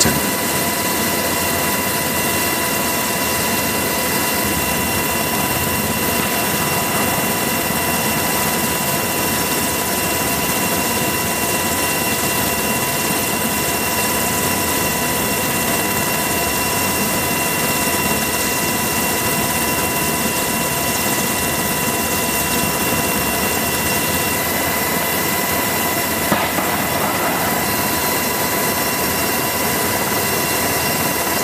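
Helicopter turbine and rotor noise: a steady, unchanging rush with a constant high whine over it.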